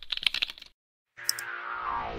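Computer-keyboard typing, a quick run of key clicks that stops under a second in. After a short silence, a music swell fades in and builds toward a beat.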